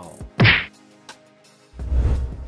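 Edited transition sound effects over faint background music: one sharp whack about half a second in, then a low whoosh swelling near the end.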